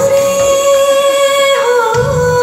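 A song: a singing voice holds one long note over musical backing, dipping slightly in pitch near the end.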